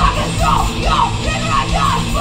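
A live thrash-metal/hardcore band playing loud, with distorted electric guitar, bass and drums in a fast, repeating riff, and a shouted lead vocal over it.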